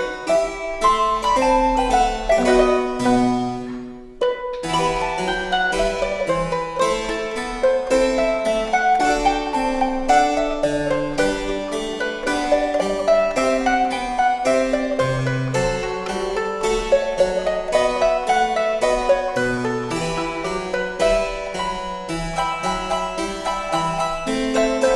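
Mandolin and harpsichord playing a baroque aria in a moderate tempo: fast repeated plucked notes over a harpsichord bass line, with a brief drop in loudness about four seconds in.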